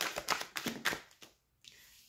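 A tarot deck being shuffled by hand: a rapid run of crisp card flicks, about ten a second, that stops about a second in.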